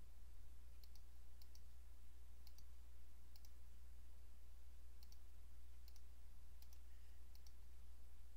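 Faint computer mouse clicks, several at uneven intervals and many in quick press-and-release pairs, as on-screen switches are toggled. A steady low hum runs underneath.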